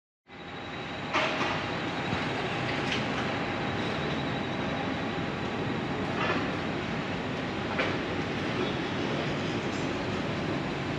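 Steady urban street rumble that fades in during the first second, with a few faint brief clicks scattered through it.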